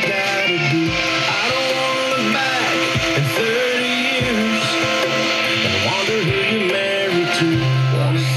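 Country music with strummed guitar, playing from an FM radio station through car speakers.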